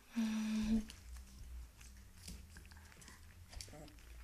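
A short hummed "mm" from a person just after the start. Then faint clicking and chewing as a young Vizsla puppy eats dry kibble from a small glass bowl.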